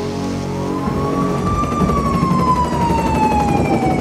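A siren-like sound effect in a theatre: one long pitched tone with overtones that rises for about a second, then slides slowly down, over a low rumble.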